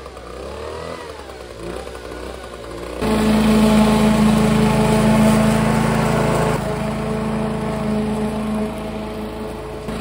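A walk-behind petrol lawn mower engine runs steadily at working speed. It comes in suddenly and loud about three seconds in. Before that a quieter engine sound wavers up and down in pitch.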